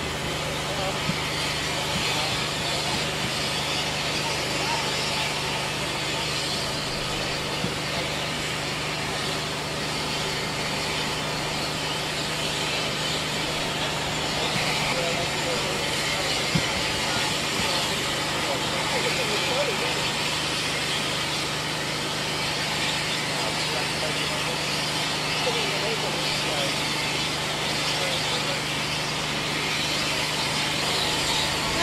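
Steam locomotive standing with steam up, hissing steadily over a low steady hum.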